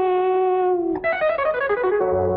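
Music from a 1980s Tamil film love song: a held melodic note for about a second, then a quick run of short stepped notes.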